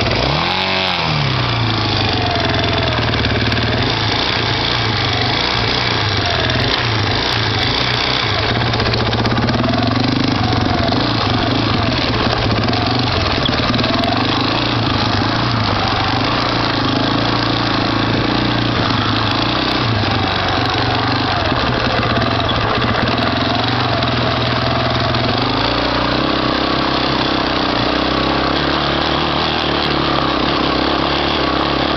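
Yamaha Warrior 350 ATV's single-cylinder four-stroke engine revving up and dropping back about a second in, then running steadily as the quad is ridden up a snowy hill, its pitch rising and falling with the throttle.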